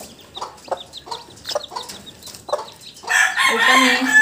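Native chicks peeping in short, high, falling chirps, about three a second, mixed with low clucks. About three seconds in, a much louder, longer call from an adult chicken starts and is the loudest sound.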